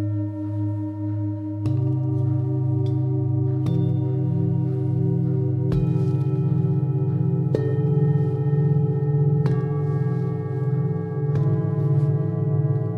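A set of seven singing bowls, tuned C, D, E, F, G, A, B, struck in turn with a padded mallet, one stroke about every two seconds, working up the sequence from the C bowl. Each bowl is left ringing, so the tones build into an overlapping, pulsing hum.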